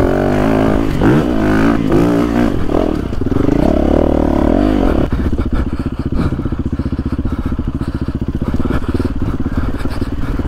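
Yamaha WR single-cylinder four-stroke enduro motorcycle engine under way, its pitch rising and falling with the throttle for about five seconds, then settling into a steadier, lower running note.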